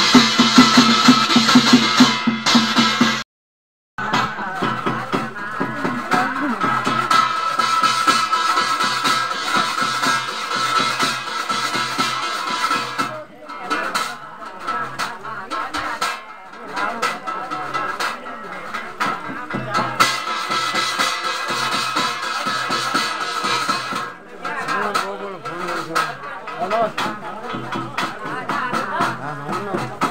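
Garhwali achhari jagar ritual music: singing over a steady, rhythmic percussion beat. The sound drops out completely for under a second about three seconds in, then the music resumes.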